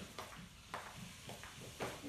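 Faint footsteps of slippers on a tiled floor, four soft steps about half a second apart.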